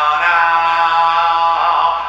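Music intro: a slow, chant-like voice holds long notes over a sustained backing, with no drums.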